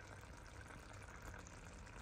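Faint, steady simmering of shredded lamb kavarma in an enamelled cast-iron pot on a low flame.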